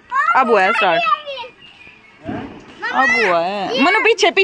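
A child's high-pitched voice calling out excitedly, with no clear words, in two stretches: one about half a second in and a longer one from about two seconds in, its pitch swooping up and down.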